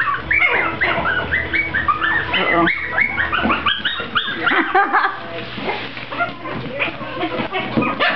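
Mi-Ki puppies yipping in play: a quick run of short, high-pitched yips, about three a second, climbing in pitch, which thins out about halfway through.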